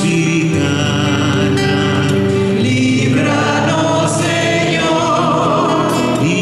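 A man and a woman singing a church litany in long held notes, accompanied by a classical-style acoustic-electric guitar, amplified through a PA.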